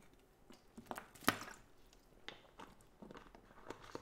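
Quiet drinking from a plastic water bottle: a few small clicks and mouth sounds of sipping and swallowing, the loudest just over a second in.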